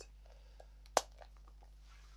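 The snap fastener of a Louis Vuitton Pochette Kirigami monogram canvas pouch clicks shut once, sharply, about a second in. A few faint handling ticks come just before and after it.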